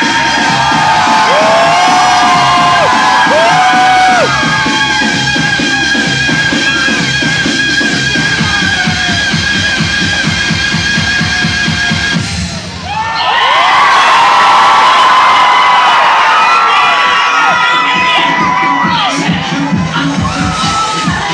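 Loud music with a steady beat, with a crowd screaming and cheering over it. About twelve seconds in the music cuts out and the crowd's screaming and cheering swells.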